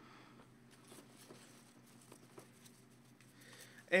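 Quiet room with a low steady hum and a few faint light clicks and rustles of hands handling trading cards; a man starts speaking right at the end.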